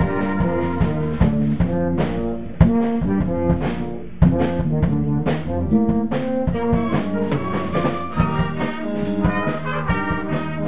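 School concert band playing: flutes, clarinets and brass carrying the tune over a drum kit, with sharp drum hits throughout and quick cymbal strokes near the end.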